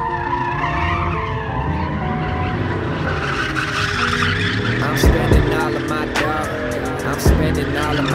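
Car tyres squealing and skidding as a car spins donuts on asphalt, mixed with music; a drum beat comes in about five seconds in.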